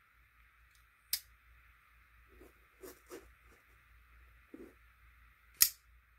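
Folding pocket knives being handled: a sharp click about a second in and a louder one near the end, with faint handling sounds between.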